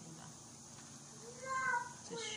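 A young child's short, high-pitched vocal sound, rising then falling, about one and a half seconds in.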